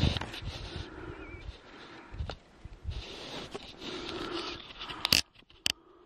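Scraping and rustling of hands working in snowy brush while a lynx snare is set. Two sharp clicks come about five seconds in, after which the handling goes quiet.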